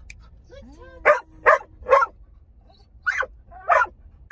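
Large dog barking inside a car cabin: three barks in quick succession about a second in, then two more near the end.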